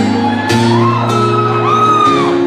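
Acoustic guitar playing a song's intro in a large hall, with an audience member's scream that rises and is held in the second half.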